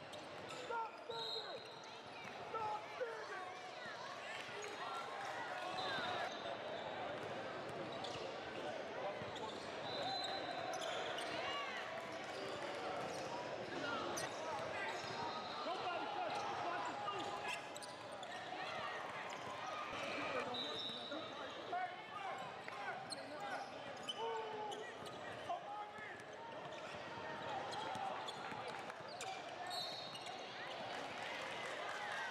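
Basketball game sounds on a hardwood court: a ball bouncing, brief high squeaks of shoes on the floor, and players and onlookers calling out.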